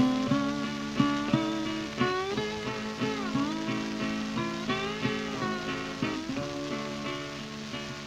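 An old acoustic folk recording playing from a record: acoustic guitar picking a steady pattern of plucked notes.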